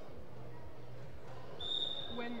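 A short whistle blast, one steady high note, starting about one and a half seconds in over the low background hum of a sports hall.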